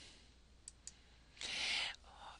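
Two faint clicks close together, then a short breath drawn in near the end.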